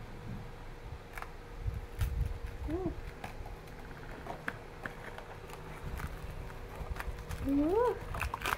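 Hands handling a wooden miniature bus toy and its packaging: low handling rumble with scattered small clicks and knocks. A short hummed voice sound comes about three seconds in, and a rising voice sound near the end.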